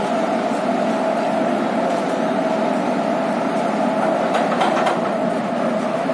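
WAP-4 electric locomotive standing with its machinery running, a loud steady hum. A few short clanks come about four and a half to five seconds in.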